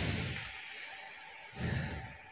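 Quiet room tone with a faint steady hum, and a brief soft rustle near the end.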